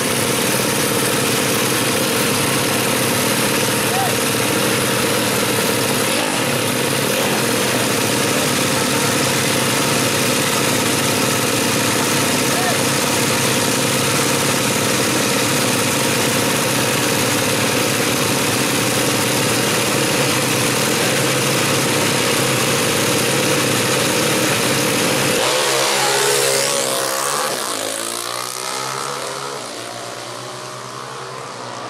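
Two four-stroke 120cc drag-racing motorcycles with their engines running on the start line, a loud, steady engine note. About 26 seconds in they launch: the pitch rises in sweeps as they accelerate away and the sound fades.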